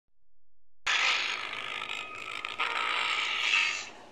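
Loudspeaker of a home-built transistor FM radio putting out a loud, noisy hiss with crackle. It starts suddenly about a second in, wavers twice in the middle and cuts off just before the end.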